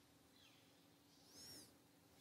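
Near silence with a faint steady hum; about a second and a half in, one short, faint, high bird chirp.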